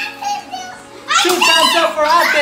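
Young children shouting and squealing excitedly in high-pitched voices, quieter at first and loud from about a second in.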